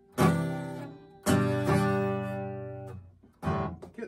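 Acoustic guitar strummed: two full chords about a second apart, each left to ring and fade, then a short choppy strum near the end. This is slow, halting chord changes in a beginner's practice.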